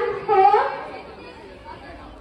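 Speech only: a girl's voice through a microphone for the first moment, then a low murmur of background chatter.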